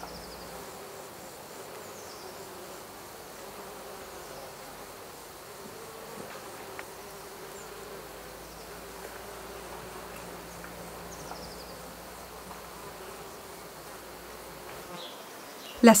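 Flying insects buzzing: a steady, low drone that wavers slightly in pitch.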